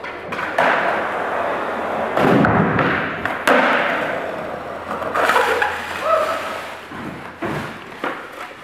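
Skateboard wheels rolling across a concrete warehouse floor, with several thuds and clacks from the board as a nollie backside heelflip is tried. The sharpest and loudest clack comes about three and a half seconds in.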